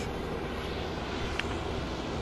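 Steady outdoor background noise: an even, low rushing with no distinct events.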